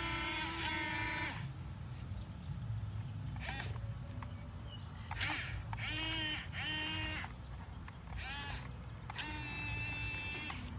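Electric motors of a Huina radio-controlled toy excavator whining in about eight short bursts as the boom and bucket move. Each whine rises in pitch as the motor spins up and then holds. A steady low rumble runs underneath.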